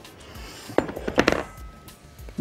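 A few light clicks and knocks of kitchen utensils, one about a second in and a quick cluster just after, over faint background music.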